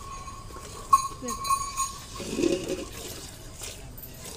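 Buffalo being milked by hand: short squirts of milk into a steel pail, with a sharp clink about a second in and a few ringing metallic strokes after it. A brief low call, voice-like, is heard about two and a half seconds in.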